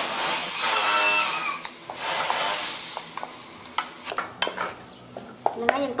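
Wooden spoon stirring thick, sticky sago pearls in a stainless steel pot: a wet churning, with short knocks and clicks of the spoon against the pot that grow sparser in the second half.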